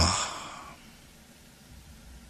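A breathy sigh trailing off after the last spoken word, fading over the first second, then only a faint hiss.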